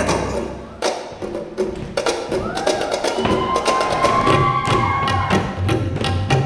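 Ensemble music accompanying a stage dance: a run of sharp percussion strikes, with a held melodic note over the beat from about three seconds in.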